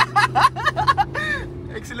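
Laughter and excited voices inside a Lamborghini's cabin over the car's steady low engine drone.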